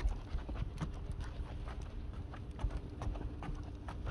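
Irregular light clicks and scuffs, a few each second, over a low rumble: footsteps on the ground during a walk with dogs.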